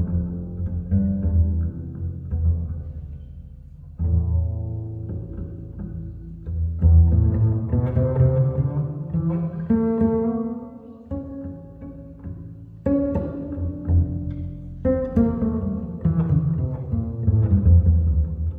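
Jazz double bass plucked pizzicato together with guitar, playing a slow arrangement in phrases that swell and fall back every few seconds.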